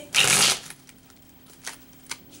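A deck of tarot cards being shuffled by hand: one short, loud burst of flicking cards in the first half-second, then a couple of faint card clicks.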